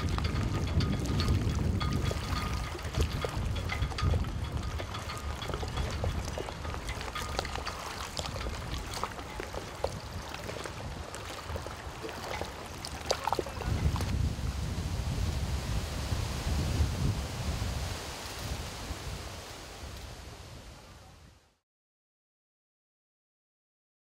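Wind gusting on the microphone in an uneven low rumble, over choppy lake water lapping, with scattered small clicks. It fades out just before the end.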